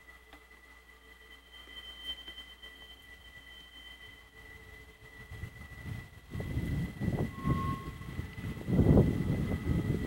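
Freight train of trailers on flatcars rolling past upgrade. A faint low rumble swells about halfway through and grows louder and uneven toward the end.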